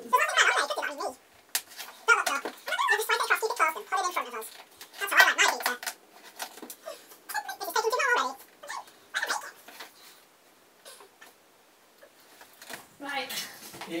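Nonverbal voice sounds: nervous laughter and high excited squeals coming in several bursts, dying away about ten seconds in.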